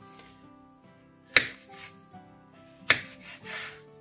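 Kitchen knife striking a wooden cutting board twice, about a second and a half apart, as tomatoes are cut, over soft background music.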